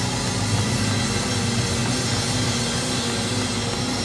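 Church band music with a drum kit playing steadily over held low notes.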